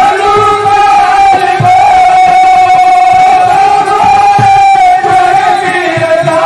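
A male folk-theatre singer holds one long, high sung note through a loud PA system, with a few low drum beats underneath.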